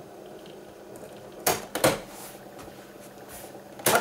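Piano-key transport buttons of a Tesla A5 cassette radio recorder clicking as they are pressed: two clicks about a second and a half in, and a sharper click near the end, with a low hiss between.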